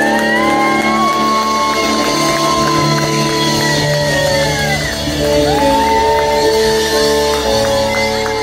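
Live rock band playing full out: guitars and drums holding a steady chord with long held lead notes above it, the first held about five seconds before it drops away, the second starting soon after and held on.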